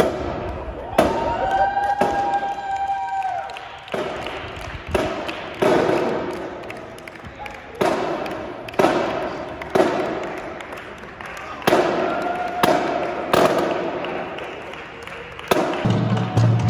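Marching drums struck about once a second, each hit ringing out in the echo of a large hall. A held pitched tone sounds under the hits near the start and again past the middle.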